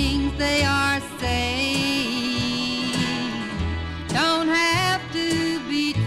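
A 1950s country and western song playing from an old radio transcription disc: a band with a lead melody that slides between notes over steady bass notes.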